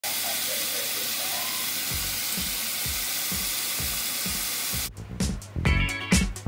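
Tap water running steadily into a bowl of whole apples, an even splashing hiss, with a faint musical beat underneath from about two seconds in. About five seconds in the water cuts off abruptly and music with a strong beat takes over.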